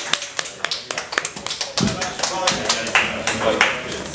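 A small audience applauding: scattered, irregular hand claps, with voices talking over them in the second half.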